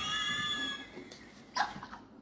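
A man's high-pitched, squealing laugh, held for most of a second and fading, then a short second burst of laughter about a second and a half in.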